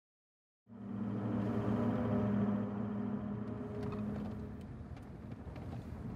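Car engine and road noise heard from inside a moving vehicle: a steady low hum that starts just under a second in and eases off after about four seconds, with small rattles and knocks toward the end.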